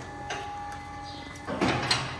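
Steel cattle-handling gates: a steady squeal as a gate moves, then a louder metallic clatter in the last half second.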